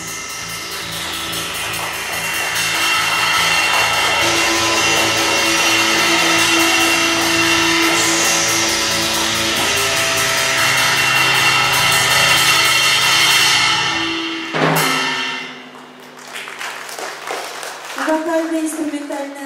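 Live rock band of electric guitar, bass guitar, keyboard and drum kit holding a closing chord under a building cymbal wash, then striking one last hit about fourteen and a half seconds in that rings away: the end of the song.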